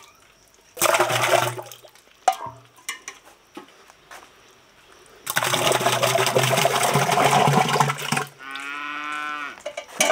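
Thick milk poured from an enamel bowl into a tall butter churn, splashing down the tube in a short pour about a second in and a longer one from about five to eight seconds. Near the end a cow moos once, a steady call about a second and a half long.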